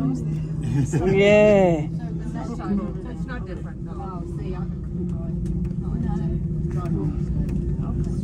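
A steady low hum and rumble inside an aerial tramway cabin riding down its cables. About a second in, a woman gives a drawn-out "ooh", with faint chatter and laughter after it.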